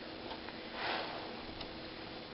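Soft rustle of carded cotton and silk fibre being rolled into a puni on a stick against a hand card, with a faint tick early on and a slightly louder brushing swell near the middle.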